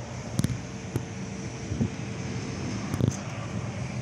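Outdoor background noise with light wind on the microphone, and a few faint knocks and clicks of handling as the camera moves around the car.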